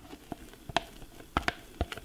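A spatula tapping and knocking against mixing bowls, including a stainless steel stand-mixer bowl, while whipped cream is scraped from one bowl into the other: about five sharp, irregularly spaced taps.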